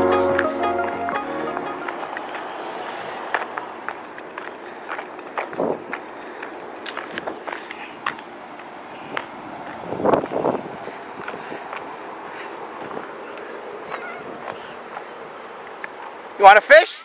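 Background music fades out over the first couple of seconds. Then come outdoor noise and irregular footsteps on a gravel lot, with a brief louder sound about ten seconds in.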